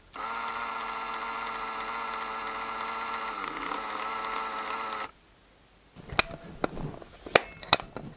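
A steady, even whine like a small electric motor running, which cuts off suddenly about five seconds in; a few sharp clicks follow near the end.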